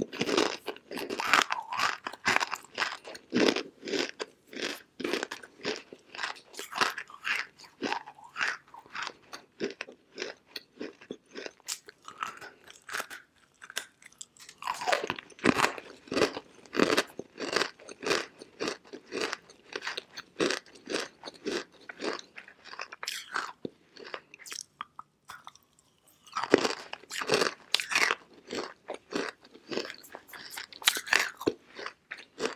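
Dry chunks of edible clay being bitten and chewed: a dense run of brittle crunches throughout. Louder bursts of crunching come as fresh pieces are bitten off, at the start, about halfway through and again near the end, with a brief lull just before the last bite.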